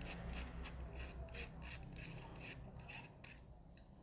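Faint scraping and rubbing of the threaded, knurled battery cap being twisted off a BOYA BY-M1 lavalier microphone's battery housing, in short repeated strokes that fade out, with one small click a little after three seconds in.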